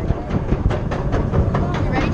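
Apollo's Chariot, a steel B&M hyper coaster, in mid-ride: wind buffeting the microphone over the rumble of the train's wheels on the track, with frequent sharp clacks and rattles.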